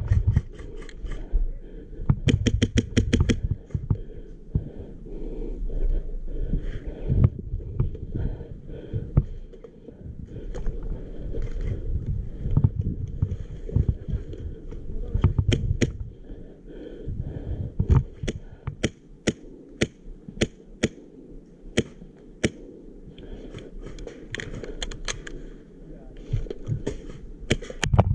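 HPA airsoft rifle (Krytac MK18 with a Wolverine Gen 2 air engine) firing: a quick full-auto burst of about a dozen shots early on, then single shots, many about half a second apart, with a few more near the end. Each shot is a sharp crack with no gearbox whir, over low wind and handling rumble.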